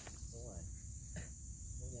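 Insects chirring steadily in one high, unbroken band, with faint voices underneath.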